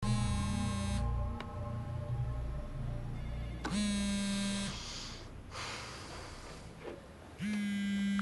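Smartphone buzzing with an incoming call: three buzzes of about a second each, a few seconds apart, over low background music.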